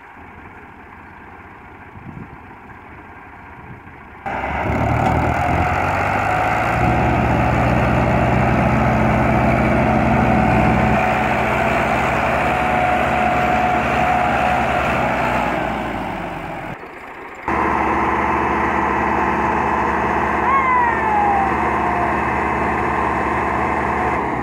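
Two tractor diesel engines, an Al-Ghazi and a Massey Ferguson 385, working hard under heavy load while hauling a heavily loaded sugarcane trailer. The sound is quieter for the first four seconds, then loud and steady, dips briefly, and returns, with a short falling tone about 20 seconds in.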